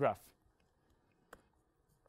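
The tail of a man's spoken word, then quiet room tone broken by a single sharp click from a laptop about a second and a half in.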